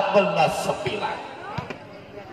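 Male commentator speaking in Indonesian, trailing off within the first half second, then a lull with a single short thump about one and a half seconds in.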